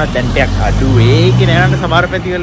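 A van's engine passing close by on the street, a low steady engine sound that swells to its loudest about a second in and fades near the end, under a man's voice.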